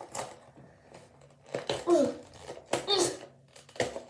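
A small cardboard package being picked and pulled at by hand, with a few sharp clicks and light rustling: a box that is hard to get open. Two short vocal sounds from a child come about midway, as if from effort.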